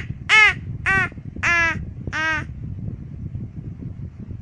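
A 15-month-old toddler's short, loud wordless calls: four open-mouthed "ah" shouts in the first two and a half seconds, each arching up and then down in pitch.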